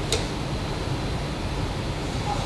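Room tone: a steady low hum and hiss, with one sharp click just after the start.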